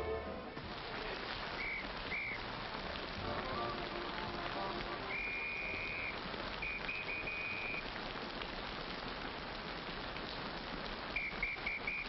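Steady rain falling, with a high whistle blown several times over it: two short toots, two longer blasts in the middle, and a trilling blast near the end.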